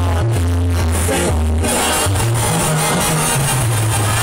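Live banda music played loud through a concert PA: a brass section with trumpets, and a tuba bass line that steps from note to note.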